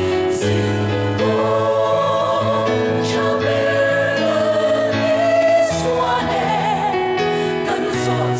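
Mixed choir of women's and men's voices singing a Mizo gospel song in parts, holding sustained chords that change step by step.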